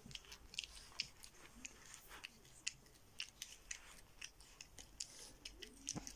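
Boston terrier puppy licking and eating out of a tin can: faint, quick, irregular wet clicks of its mouth working in the can.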